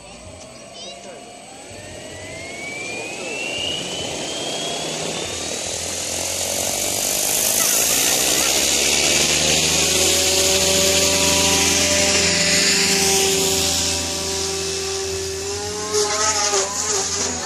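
Electric Goblin 500 RC helicopter with a Compass Atom 500 motor in flight. A whine rises in pitch and grows louder over the first several seconds, then holds steady and loud with a rotor hiss that swoops briefly about three-quarters of the way through.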